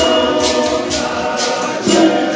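Men's choir singing in harmony, with sharp percussion strokes beating out the rhythm.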